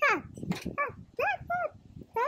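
A dog whimpering: a quick falling whine, then three short high-pitched whines that each rise and fall.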